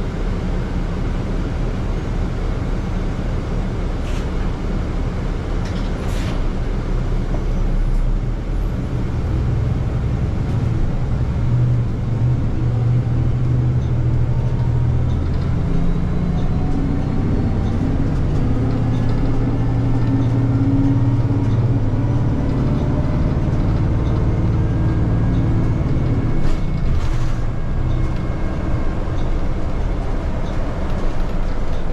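Interior of a Nova LFS hybrid-electric city bus: it stands with a low hum, then pulls away about eight seconds in and picks up speed, its drivetrain hum rising and shifting with a faint rising electric whine. A few brief clicks and rattles are heard along the way.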